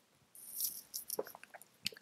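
A person drinking from a mug, heard faintly: a soft sip, then a few small mouth and swallowing clicks.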